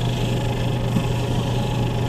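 Lapidary end lap sander running with a steady low hum, its wet sandpaper disc spinning.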